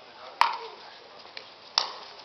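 Pickleball paddles striking the hollow plastic ball during a rally: two sharp pops about a second and a half apart, the first the louder.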